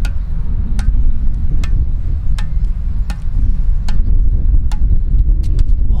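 A squash ball bounced up repeatedly off the strings of a squash racket: a sharp tap about every three-quarters of a second. Heavy wind rumble on the microphone.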